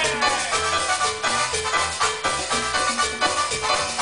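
Live banda music played by a full band: sustained brass and reed lines over a bass line that moves in short, evenly timed notes, with no singing.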